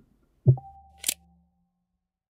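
Logo-animation sound effects: a deep hit about half a second in, with a short hum trailing after it, then a sharp click like a camera shutter about a second in.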